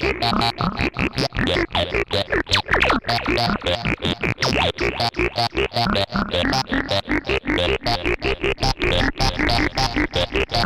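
Novation Bass Station II monophonic analog synthesizer playing a rapid run of short, evenly repeated notes, its tone changing as the front-panel knobs are turned.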